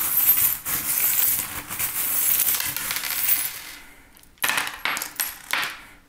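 A handful of small metal charms jingling as they are shaken together for about four seconds, then a few separate clinks as they land and settle on the table, as in a charm-casting reading.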